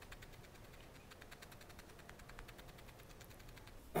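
Needle felting pen with two barbed felting needles stabbing rapidly and repeatedly into wool fur, making a quick, even run of faint ticks several times a second as the needles punch through the fibres.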